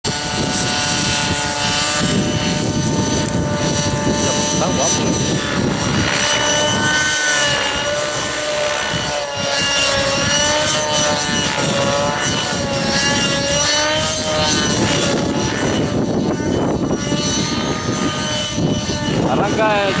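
Radio-controlled helicopter flying aerobatics: a steady whine from its motor and rotor that wavers up and down in pitch as it manoeuvres.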